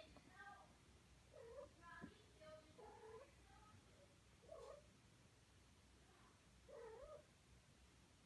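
Siamese kittens giving a series of faint, short meows, about six calls spaced a second or so apart, each bending down and back up in pitch.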